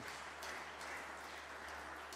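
Applause from the benches of a parliamentary chamber at the end of a speech: a steady patter of clapping that slowly dies away.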